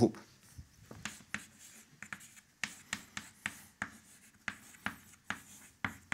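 Chalk writing on a blackboard: an irregular run of short taps and scratches as symbols are chalked, about two or three strokes a second.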